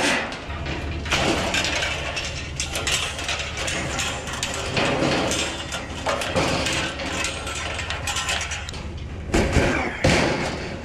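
Sheet-metal and wire-mesh rattling and clanking as tall stainless-steel patio heaters are handled and slid into a pickup bed, over a low steady hum. A louder knock comes just before the end.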